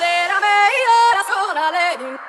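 Background music: a single melodic line that steps and slides between notes, with no bass or beat under it.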